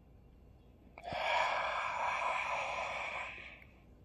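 A long, breathy exhale that starts suddenly about a second in, with a faint click at its onset, and fades away near the end.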